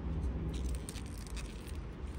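Faint rustling of pea vines and leaves, with a few small ticks, as pea pods are picked off by hand, over a steady low rumble.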